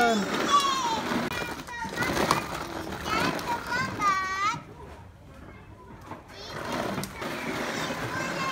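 Young children's voices calling out and squealing as they play, in several short high-pitched bursts, quieter for a couple of seconds past the middle.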